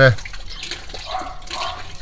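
Water running and trickling steadily, with a brief stronger patch about a second in: water leaking from the solar collector's manifold fitting.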